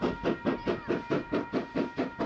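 Ab class Pacific steam locomotive No. 608 working hard with its two-cylinder exhaust chuffing in an even beat, about six beats a second, as it hauls its train past.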